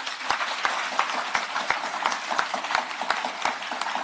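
An audience applauding steadily, many hands clapping at once.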